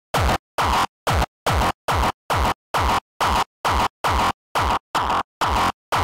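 Distorted hardstyle kick drum looping alone at 150 BPM, about two and a half hits a second with short gaps between. Each hit falls in pitch. Its tone shifts slightly as the dry/wet mix of the waveshaper distortion and EQ effects is turned.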